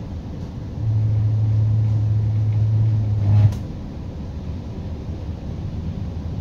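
Regional passenger train running, a steady low rumble of the carriage in motion. About a second in, a loud, steady low hum starts and holds for about two and a half seconds, then cuts off suddenly with a short click.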